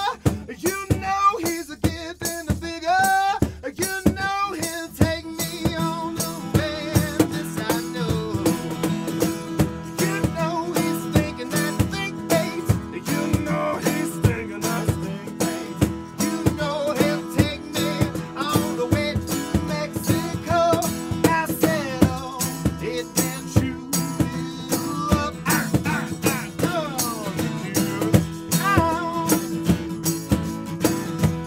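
Live acoustic band music: two acoustic guitars, one of them a Tacoma, strum over a steady, busy cajon beat. A man sings in the first few seconds.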